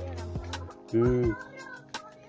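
Dhol drum strikes and held musical notes from a bhajan-kirtan some way off. About a second in comes the loudest sound, a brief 'hmm'-like call that rises and falls in pitch.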